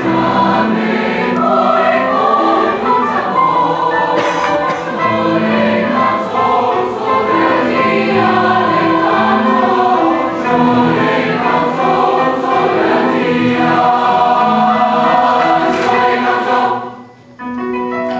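Large mixed choir of young women's and men's voices singing a Venezuelan choral piece built on traditional Latin dance rhythms, in Spanish. The singing breaks off briefly about a second before the end, then comes back in.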